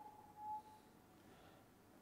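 Karl Storz Autocon III 400 electrosurgical generator giving one short, steady beep as its touchscreen is slid to unlock. Otherwise near silence.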